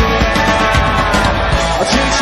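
Live rock band playing loud, with electric guitars, bass and a steady drum beat.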